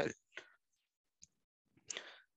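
Quiet gap with faint mouth noises, a single small click a little past halfway, and a breath drawn in near the end.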